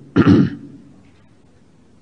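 A man clears his throat once, briefly, just after the start, followed by quiet room tone.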